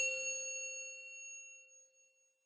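A single bright bell-like chime, struck once and ringing with several clear tones that fade away over about two seconds: a title-reveal sound effect.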